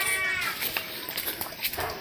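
An animal's long drawn-out call, which falls in pitch and stops about half a second in.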